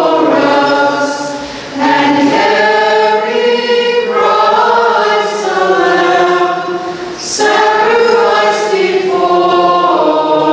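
Choir singing a hymn in long, held phrases that move from note to note, with short breaks for breath about two seconds in and again about seven seconds in.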